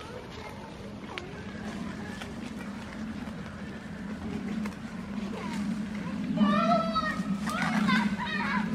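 Two high-pitched voice calls near the end, each bending up and down in pitch, over a steady low hum.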